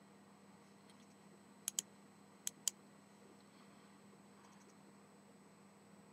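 Computer mouse button double-clicked twice: two pairs of sharp clicks, the pairs under a second apart, over a faint steady hum.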